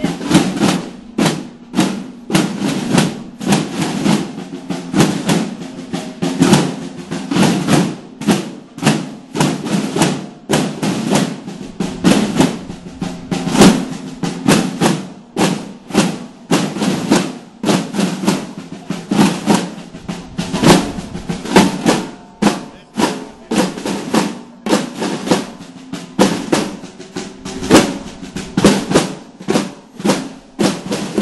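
A procession drum corps: many red snare-type field drums beaten together by marching drummers in a dense, steady rhythm of rapid strikes.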